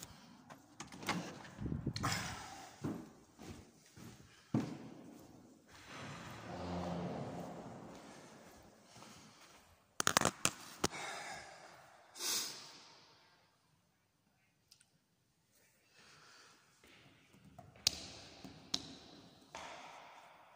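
Doors banging shut and scattered knocks and thuds from footsteps and phone handling. The sharpest knocks come about ten seconds in and again near the end.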